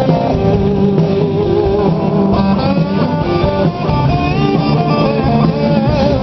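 Live rock band playing, with an electric guitar line of bent, wavering notes over the band.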